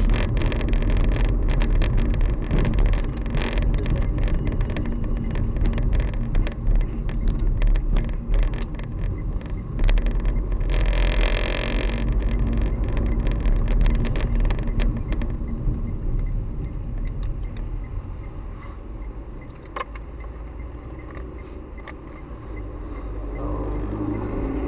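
Car's engine and tyre noise heard from inside the cabin while driving in city traffic, with many small clicks and a brief hiss about halfway through. The noise grows quieter in the last third as the car slows to a stop.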